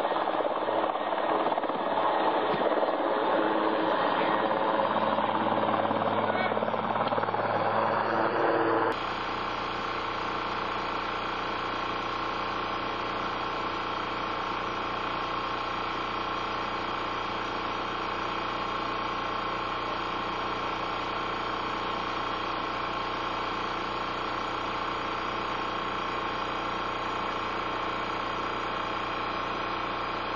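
Large transport helicopter running on the ground, its engines and rotor making a dense roar. About nine seconds in the sound cuts abruptly to a steadier, quieter hum with several fixed tones that holds to the end.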